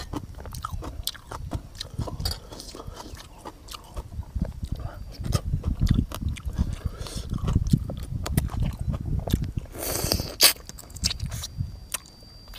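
Close-up sounds of a person chewing and biting frog meat, with many small irregular wet mouth clicks. About ten seconds in there is a brief, louder rush of hissy noise.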